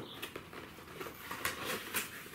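Faint handling noise of a cardboard box being picked up and moved: a few light taps and rustles over low room hiss.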